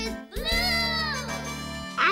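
A child's voice holds one long drawn-out note, rising and then easing down, over children's song music with steady low accompaniment.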